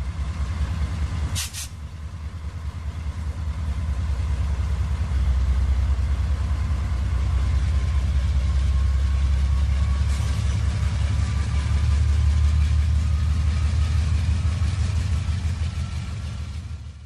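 HO-scale model freight train rolling past on the layout track: a steady low rumble of the cars running over the rails, louder from about five seconds in. A short high hiss comes about a second and a half in.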